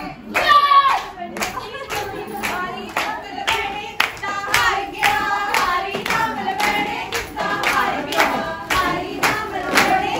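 Group of women singing a Punjabi folk song for gidha while clapping hands in a steady rhythm, about two claps a second.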